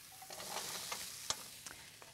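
Cubed butternut squash going into a hot oiled skillet of onion and garlic and sizzling, starting about a third of a second in, with a few sharp clicks in the pan as it is stirred, the loudest a little past halfway.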